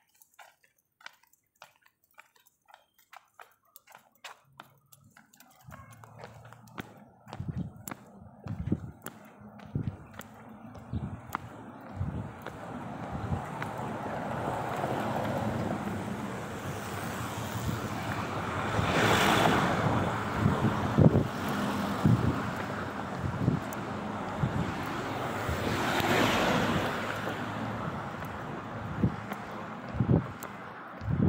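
Faint, evenly spaced clicks for about five seconds. Then wind noise on the microphone builds up over low thumps and swells twice in strong gusts.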